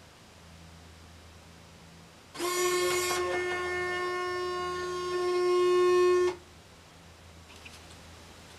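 ALTAIR EZ:1 robot giving one steady, buzzy pitched tone about four seconds long, starting a little over two seconds in, swelling near the end and cutting off sharply, as its left claw grasp sensor detects an object placed into the claw.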